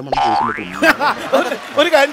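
A comedy boing sound effect: a sudden tone that glides upward in pitch for about half a second, followed by men talking.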